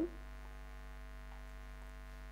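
Steady low electrical mains hum on the recording, a constant drone with faint higher overtones.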